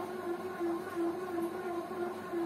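Bread maker's motor humming as it kneads dough: a steady hum that swells and dips about three times a second.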